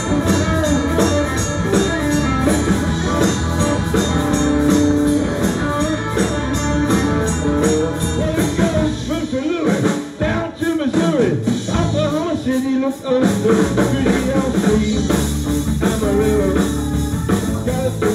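Live rock band with electric guitar, bass guitar and drum kit playing an instrumental passage. About halfway through, the bass and drums drop out for roughly four seconds, leaving a guitar bending notes alone, then the full band comes back in.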